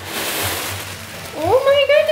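Gift wrapping paper rustling and tearing as a present is unwrapped: a steady papery hiss for just over a second. It is followed by a long rising "ooh" of delight.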